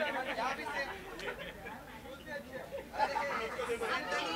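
Chatter: several people talking over one another, with no other clear sound.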